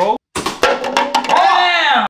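A person's voice with a few sharp clicks or knocks. The sound cuts out completely for a moment near the start.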